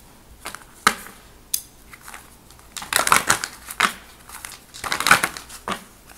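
A thick deck of cards being shuffled by hand: a few light clicks, then two spells of rustling, cards sliding against each other, about three and five seconds in.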